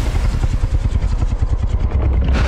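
Deep, loud rumble from the film's sound design, pulsing in a fast, even flutter of about a dozen beats a second.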